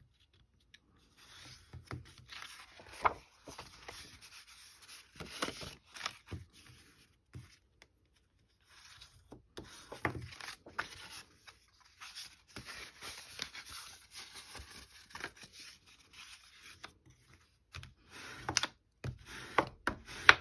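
Scored paper being folded and creased with a bone folder: irregular dry rubbing and rustling with a few sharp taps, pausing briefly partway through.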